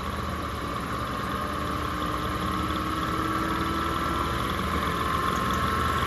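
Distributor test machine's drive motor spinning an HEI distributor, running with a steady whine that rises slowly in pitch and grows a little louder as the speed is brought up toward about 2800 RPM.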